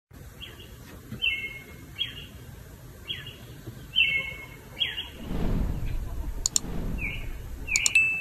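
A bird calling over and over outdoors: short whistled notes repeated about once a second, with a low rumble in the background during the second half.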